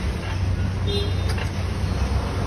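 Steady low rumble of a car engine and street traffic, with a short high tone just under a second in and a single sharp click just after it.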